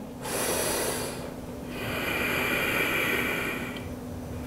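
A woman's two audible breaths, close to the microphone: a short one, then a longer one of about two seconds.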